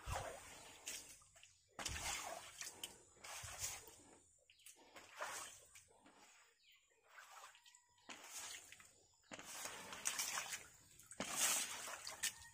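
A long-handled floor squeegee pushing water across a wet concrete floor, in repeated scraping, splashing strokes. There is a quieter pause midway, and the strokes come thick again near the end.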